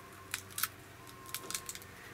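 A fresh green pea pod being split open between the fingers, the crisp pod cracking in a few short sharp clicks.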